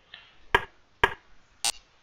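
Three sharp clicks of a computer mouse about half a second apart, typical of stepping through moves on an analysis board.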